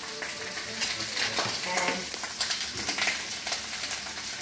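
Escarole frying in hot oil in a pan, a steady sizzle with many small crackles as the greens are stirred.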